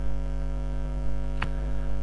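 Steady electrical mains hum, with a single sharp mouse click about one and a half seconds in as the image is selected.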